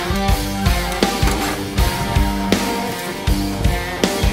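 Background rock music with electric guitar and a steady drum beat.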